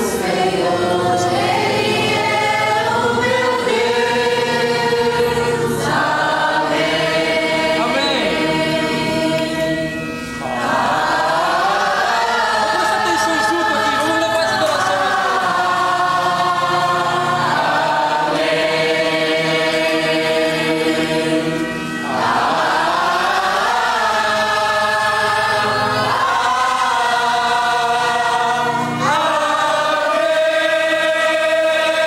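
A congregation singing a worship song together in long held phrases, with short breaks between phrases about ten, twenty-two and twenty-nine seconds in.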